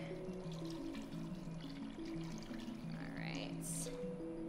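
Broth pouring from a glass pitcher into a pot of chopped vegetables, under background music with a simple stepped melody. A brief higher splash comes near the end as the pour finishes.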